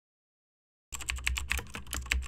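Computer keyboard typing sound effect: a quick run of key clicks, about eight to ten a second, starting about a second in.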